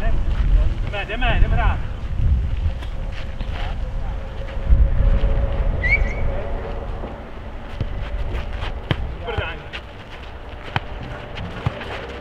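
Outdoor futnet rally: wind rumbling on the microphone, players' short shouted calls, and sharp knocks of the ball off feet and the concrete court, most distinct near the end.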